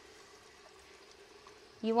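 A bathroom sink faucet running, a faint steady stream of water into the basin. A woman's voice starts speaking near the end.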